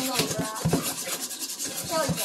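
Wire whisk scraping around a stainless steel mixing bowl in quick, repeated strokes as it beats a wet flour-and-egg batter.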